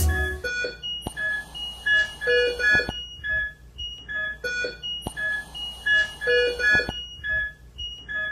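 Hospital patient monitors beeping, as around a neonatal incubator: many short electronic beeps at several pitches overlap in a pattern that repeats about five seconds in, with a few soft clicks.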